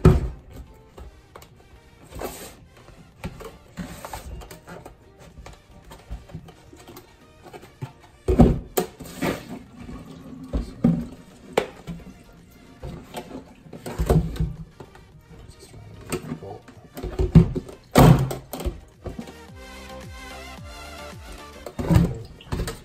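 A plastic tub holding a solid block of beeswax being twisted and knocked against a stainless steel sink to free the wax, which is sticking to the plastic. Irregular knocks and thunks, the loudest clustered about eight seconds in and again near fourteen and eighteen seconds, over background music.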